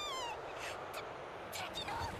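Anime episode audio played back quietly: a character's drawn-out high vocal exclamation tails off just after the start, a few short clicks follow, and a character begins speaking near the end.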